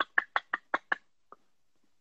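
A man laughing in a quick run of short 'ha' pulses, about six a second, which stops about a second in.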